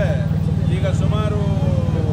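Motorcycle engine idling with a steady, rapid low pulse, while a man talks over it.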